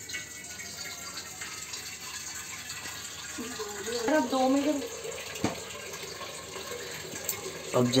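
Gas stove burner on a low flame giving a steady hiss under a pot of water, with a brief murmured voice about halfway through and a single click a little later.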